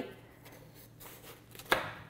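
Kitchen knife cutting through a watermelon on a wooden cutting board: faint slicing, then a single sharp knock on the board near the end.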